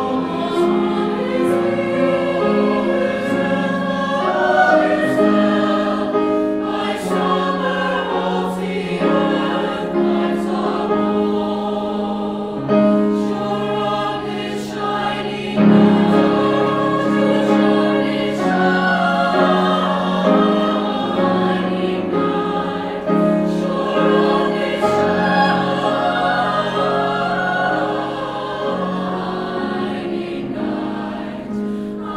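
Mixed choir of men's and women's voices singing in parts, holding long chords, with a sudden swell in loudness a little past the middle.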